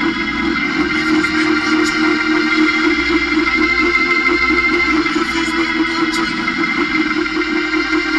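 Organ playing steady held chords.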